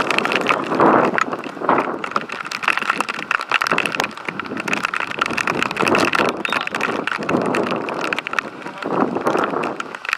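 Wind rumbling on the microphone over a five-a-side game on artificial turf, with scattered sharp knocks from kicks and footsteps.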